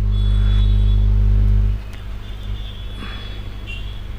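A steady low electrical hum with a faint high whine above it, dropping noticeably in level about two seconds in.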